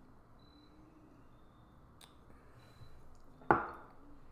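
Quiet room, a faint click about halfway through, then one sharp knock near the end as a drinking glass is set down on a table.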